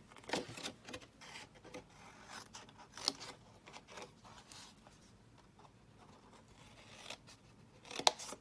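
Scissors snipping notches into cardstock tabs: a few short, faint cuts at irregular intervals mixed with the card being handled, the sharpest snip about three seconds in and another at the end.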